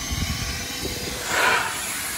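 Hart 16-gallon wet/dry shop vac running, its floor nozzle drawing air across car carpet as a steady hiss over a faint steady motor tone. The hiss swells briefly about a second and a half in.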